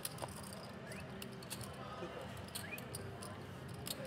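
Faint murmur of background voices with a few scattered light clicks of poker chips being handled at the table.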